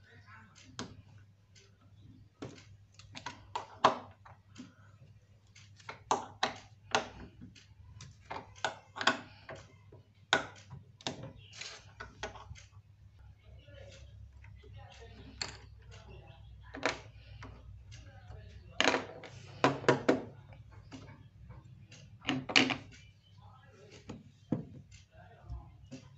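A metal wrench clicking and clinking against the bolts and steel plate of a refrigerator door's top hinge as the bolts are undone and lifted out: irregular sharp clicks and small knocks, a few louder ones near the end.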